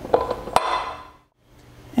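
Two sharp metal clinks about half a second apart: a metal bending former being seated onto the steel drive spindle of a pipe bender.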